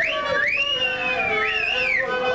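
A high whistle sliding in pitch: a quick rise at the start, then a rise and slow fall, then a wobble up and down near the end, over a background of lower steady tones and chatter.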